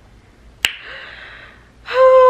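A woman's single sharp mouth click about two-thirds of a second in, followed by a breathy sigh lasting about a second; near the end she starts a long, slowly falling vocal sound.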